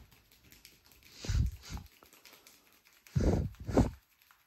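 Muffled, hollow thumps of hands patting and cupping over the head and ears during an Indian head massage, in two pairs, the second pair louder.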